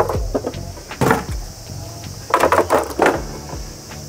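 Metal cover panels being lifted and slid off a concrete counter top, scraping and knocking several times, with a group of knocks a little over two seconds in.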